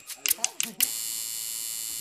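A few light taps, then from about a second in an electromagnetic coil tattoo machine buzzes steadily as its needles run.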